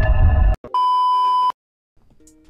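A loud, noisy sound-effect clip cuts off about half a second in. A steady, high test-card beep then sounds for under a second and stops abruptly, leaving silence.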